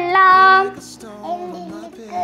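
A high voice singing in a sing-song chant: one long held note through the first half-second or so, then softer singing.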